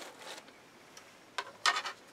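Handling noise from a 3D-printed plastic cartridge holder being taken out of a cardboard box: light rubbing, a click, then a short scrape near the end.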